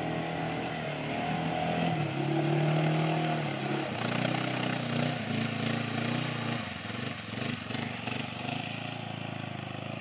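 ATV engine running hard under load as the quad ploughs through pond water, with splashing over it. About four seconds in the engine note drops, and after about seven seconds it eases off to a lower, steadier note.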